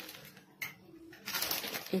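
A polythene sheet crinkling as a roll of sweet dough is lifted off it by hand, loudest in the second half. A faint, low, steady tone sits underneath in the first half.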